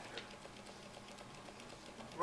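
A quiet pause: steady faint hiss of an old recording of a lecture hall, with a few faint light clicks.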